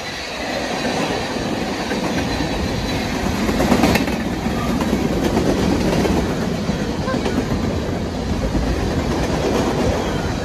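Covered hopper cars of a freight train rolling past close by: a steady rolling noise of steel wheels on rail, briefly louder about four seconds in.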